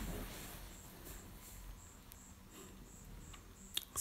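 Faint handling of stiff woven aso-oke fabric as it is folded by hand, fading after about a second, with a faint high-pitched chirp repeating evenly about three times a second throughout.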